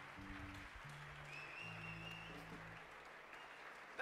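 Faint audience applause, with a few soft, low held notes from the stage that change pitch every second or so.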